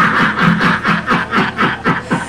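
A person laughing in a rapid run of short bursts, about five a second, each dropping in pitch.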